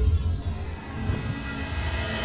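Sound design for an animated logo intro: a deep low boom at the start, then a held, ringing synth chord over a low rumble, with a brief swish about a second in.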